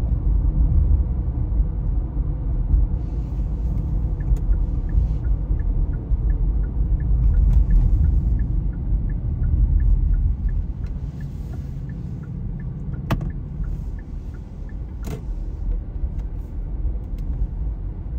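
Car cabin rumble and road noise from a moving car, steady and low, easing off after about twelve seconds. A turn signal ticks evenly through the middle stretch, and two sharp clicks come near the end.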